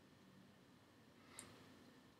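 Near silence: faint room tone, with one brief faint sound about one and a half seconds in.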